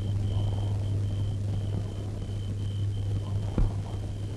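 Steady low hum from an old film soundtrack, with a faint broken high whine above it and a single sharp click about three and a half seconds in.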